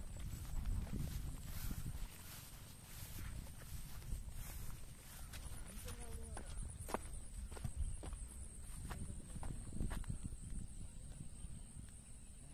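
Footsteps on bare rock and dry grass, irregular clicks and scuffs, over a low wind rumble on the microphone, with a thin steady high-pitched tone throughout.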